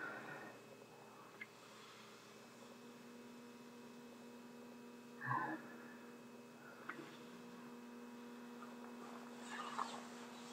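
Faint steady electrical hum, with a brief louder sound about five seconds in and another near the end.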